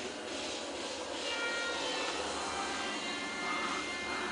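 Steady rustling and rubbing of a handheld camera being moved around, with faint steady tones behind it.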